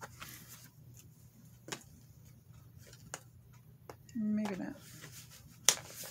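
Scattered clicks and scrapes of a pen being worked against packing tape on a cardboard box, ending in a sharp click, the loudest sound. About four seconds in, a short falling vocal 'hmm' of effort.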